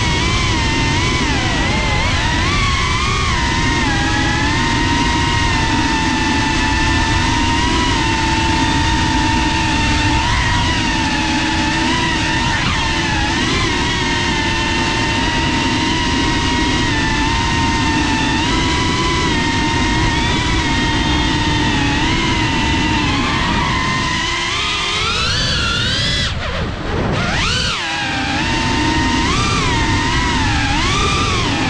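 FPV quadcopter's motors and propellers whining, several tones together that waver in pitch with the throttle. Near the end the whine climbs sharply, cuts out for a moment, then rises again.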